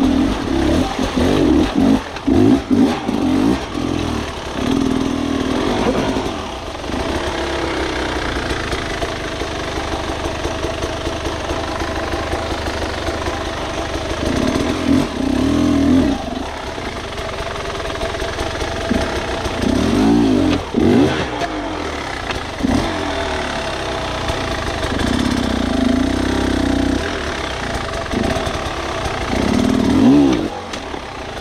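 Beta enduro dirt bike engine pulling slowly under load up wet rock, with the throttle opened in about five short revving bursts over a low, steady running note.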